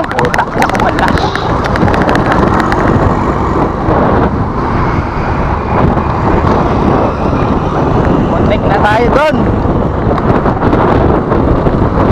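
Wind buffeting the microphone of a bicycle-mounted camera on a fast ride, mixed with the steady noise of cars and motorcycles on the road alongside. A brief wavering pitched sound cuts through about nine seconds in.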